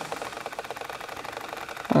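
Camera lens zoom motor running, a fast, even mechanical ticking as the lens zooms in.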